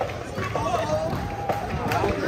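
Several people's voices over busy street noise, with faint music underneath.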